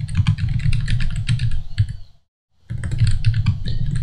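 Fast typing on a computer keyboard, a dense run of key clicks. It breaks off into a brief complete dropout a little past halfway, then resumes.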